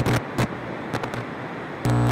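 Crackling TV-static and glitch noise, full of sharp clicks over a low electrical hum, used as a transition effect. It gets louder near the end.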